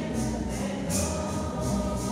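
Group of voices singing a hymn together, accompanied by shaken jingling percussion in a recurring beat.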